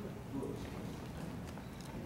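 Faint footsteps and shuffling on a wooden stage floor: a few soft, scattered knocks over the low hum of a large hall.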